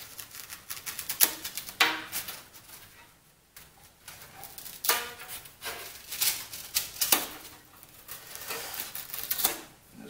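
Handling noises on the foam-cutting jig: irregular rubs, scrapes, short squeaks and light knocks as the freshly cut foam block, the wooden strips and the steel weights are shifted by hand.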